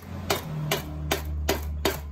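A mallet striking the cylinder head of a VW Beetle 1600cc air-cooled engine to break it loose from the cylinders: about five sharp, evenly spaced blows a little under half a second apart.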